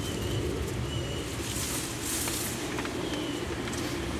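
Outdoor ambience: a steady low rumble like distant traffic, with a few faint short high chirps from birds and a brief rustle around the middle.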